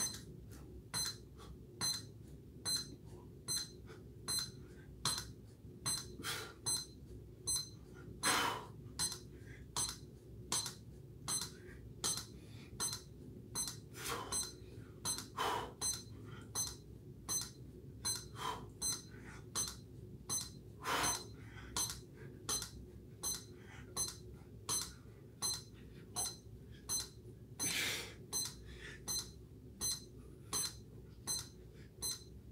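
Push-up counter board clicking with a short high beep each time the chest presses its red pad, about one rep every 0.7 s. This is a fast, steady push-up pace.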